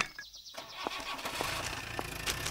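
A motor engine running steadily and growing a little louder, with scattered light clicks.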